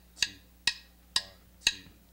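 Drumsticks clicked together in a drummer's count-in: four sharp, evenly spaced clicks about half a second apart, setting the tempo for the band.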